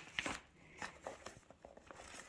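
Faint scattered clicks and light taps of plastic food containers and an insulated lunch bag being handled, with a slightly louder tap just after the start.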